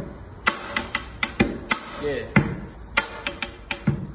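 Pens drummed on a tabletop as a beat: sharp taps and knocks in an uneven rhythm, several a second.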